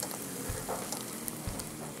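Eggs sizzling steadily in a frying pan, with a couple of soft low thumps about half a second and a second and a half in.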